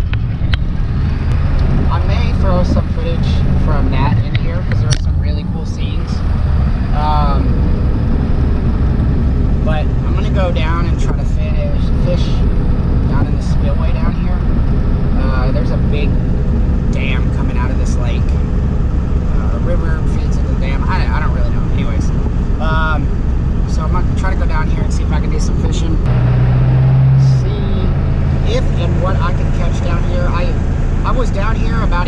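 Vehicle engine and road noise heard inside the cab while driving: a loud, steady low drone, with a stronger low hum for about a second near the end.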